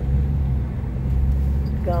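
Steady low rumble of a car's engine and tyres on the road, heard from inside the moving cabin.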